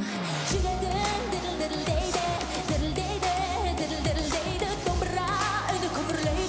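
A woman sings into a microphone on stage over a pop backing track or band. The backing has a steady bass and a deep kick drum that comes in about half a second in and beats roughly every 0.8 seconds.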